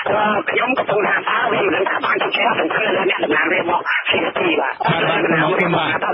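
Continuous speech by a man, talking fast with only a brief pause about four seconds in. It has the thin, narrow sound of a radio broadcast recording.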